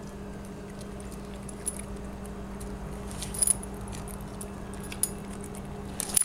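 A dog's collar tags clinking and jingling lightly as it moves about, a few small clinks spread through, with the loudest cluster a little past halfway, over a steady low hum.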